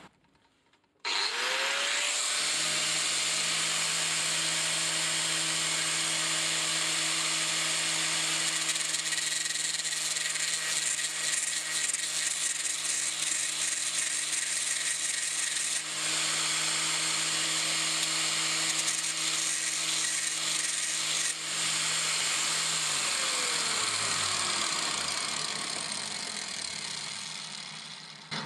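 Angle grinder switched on about a second in, spinning up and running steadily while a tungsten TIG electrode, spun in a Hitachi cordless drill, is ground to a point against its sanding disc. Near the end the grinder is switched off and its pitch falls as it winds down.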